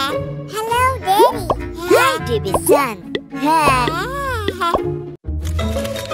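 Squeaky, high-pitched cartoon character voices babbling in short phrases that swoop up and down in pitch, over light children's background music. The sound drops out briefly about five seconds in, and the music carries on after.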